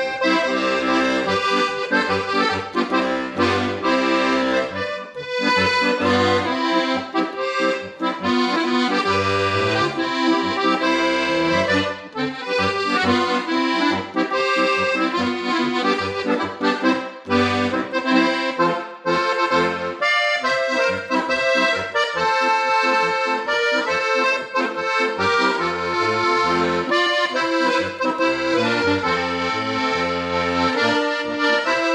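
A Steirische Harmonika, a diatonic button accordion built by Parz, playing a lively folk tune: a running melody over a regular pulsing bass, with brief breaks between phrases.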